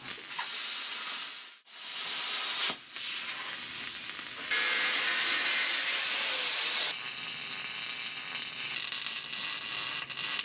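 Angle grinder with a disc cutting into steel bar stock: a steady, hissing rush of disc on metal, broken twice by short gaps in the first three seconds.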